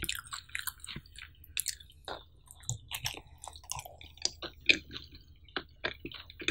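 Close-miked chewing of a cheesy pizza slice: wet mouth sounds with many short, irregular clicks and crackles.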